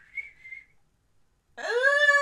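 A person whistles a short note that rises and then holds for under a second. About a second and a half later comes a loud, high-pitched, drawn-out vocal "ooh".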